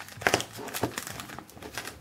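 Small clear plastic bag crinkling as it is handled, with a few sharper clicks among the crackle.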